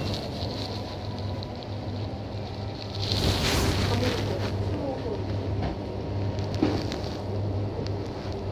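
Shop background sound picked up by a phone: a steady low hum with rustling, and faint, indistinct voices or music. A louder rustle about three seconds in, and a single sharp click near the end.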